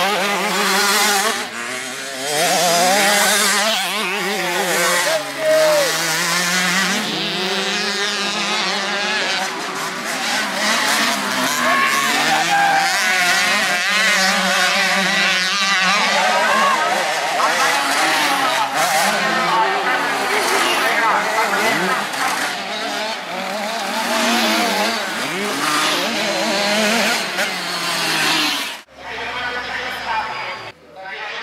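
Several motocross dirt bike engines revving hard through corners and climbs, their pitch constantly rising and falling as the riders shift and throttle on and off. The sound cuts off suddenly about a second before the end.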